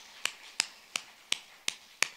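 One person clapping hands at a steady pace, about three sharp claps a second.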